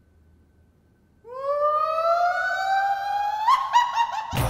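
Comedy sound effect: a single siren-like tone that starts about a second in and glides slowly upward, breaking into a quick run of short notes near the end.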